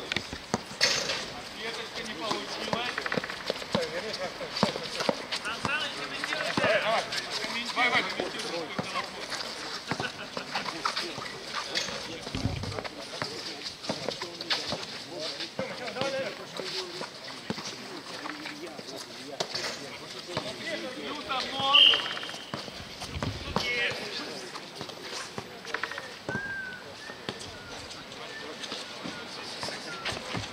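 Outdoor streetball game: players' voices calling across the court over frequent short knocks of a basketball bouncing and feet on the court. A brief, sharp high-pitched sound about two-thirds of the way through is the loudest moment.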